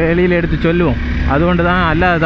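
A man talking over the low, steady rumble of a Honda CBR 250R motorcycle being ridden along the road. The rumble comes through most clearly in a short pause in his talk about a second in.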